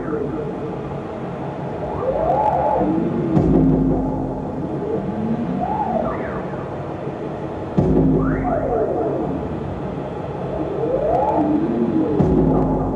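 Live experimental electronic music played through a small mixer: sliding tones that rise and fall like sirens over a low hum and drone. A deep low swell comes in twice, about three seconds in and again near eight seconds.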